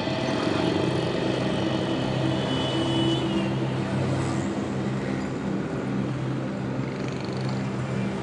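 Street traffic: motor vehicle engines running and passing by as a steady hum.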